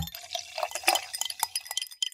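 A quick run of light glassy clinks and ticks, with a faint high ringing tone near the end: a sound effect marking the switch between podcast segments.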